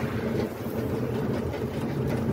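Ride noise inside a moving Piaggio Ape E-City FX electric three-wheeler: a steady low rumble of the vehicle running on the road.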